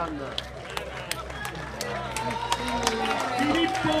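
Roadside crowd cheering the approaching race leader: mixed voices with scattered sharp hand claps over a steady low hum.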